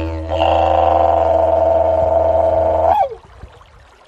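Didgeridoo playing a steady low drone with a bright, higher overtone held above it. About three seconds in, the tone swoops downward and the playing stops.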